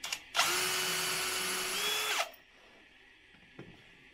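Bosch Professional 18 V cordless drill drilling a hole into the corner of a wooden window frame. The motor whines steadily for about two seconds, rising slightly in pitch just before it winds down and stops.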